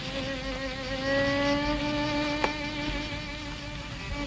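A violin in the film score holds one long, slightly wavering note that creeps up in pitch before fading, between phrases of a slow violin melody. A single sharp click sounds about two and a half seconds in.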